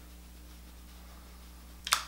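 Quiet room tone with a steady low electrical hum; a voice starts up briefly right at the end.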